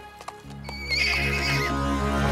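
A foal whinnying, one warbling call of about a second, over background music that swells in about half a second in. A few hoof knocks sound just before it.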